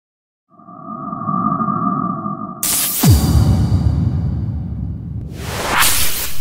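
Electronic intro sting made of sound effects: two held tones over a low rumble, then a sudden hit about two and a half seconds in with a steep falling boom, and a whoosh near the end.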